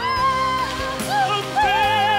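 A pop anthem performed live: a singer holds long notes with vibrato over backing music.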